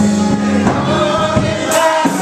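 Gospel music: a church congregation singing together over instrumental accompaniment that holds steady low notes.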